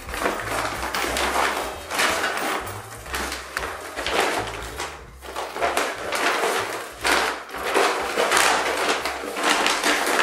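Paper and fabric shopping bags rustling and crinkling in short bursts as they are handled and packed, over soft background music with a low bass line.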